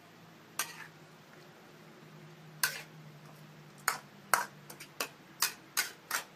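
A spatula clinking and knocking against a steel wok as water spinach and beef are stir-fried: about nine sharp strikes, sparse at first and coming quicker in the second half, over a faint low steady hum.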